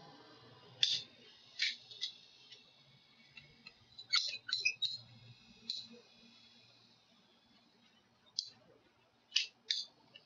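PVC pipe cutters clicking and snapping as they cut through a 5/16-inch poplar dowel: a string of short, sharp clicks at uneven intervals, bunched together around four to five seconds in and again near the end.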